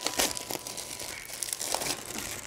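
Clear plastic wrapping crinkling and rustling as it is pulled off a new table tennis paddle, in irregular crackles.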